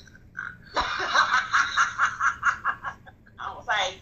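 A woman laughing: a run of quick, evenly spaced laughs starting about a second in, then a short rising laugh near the end.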